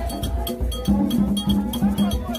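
Ceremonial percussion and singing: a struck metal bell and drums keep a quick, even beat while a crowd sings long held notes together.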